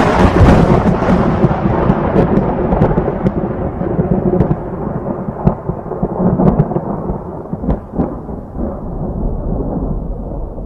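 A thunderclap that starts loud and rolls on as a long rumble, its sharper upper sound slowly dying away while the low rumble carries on.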